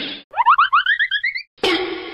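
A cartoon sound effect: a quick run of about ten short rising chirps, each one higher than the last, between two brief bursts of hiss.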